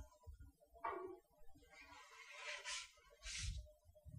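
Faint sliding and scraping of a baker's loading board on the deck of a bread oven as a baguette is set in and the board is pulled back, with two short swishes near the end and a few soft knocks.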